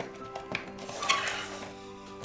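Soft background music with a few light clicks and a louder rustle about a second in as small items and the packaging are handled on a desk.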